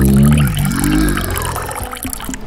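A carbonated soft drink pours from a can in a steady stream into a glass jug of ice, with a splashing fill and a fine crackle of fizz. A long held low tone sounds over roughly the first second.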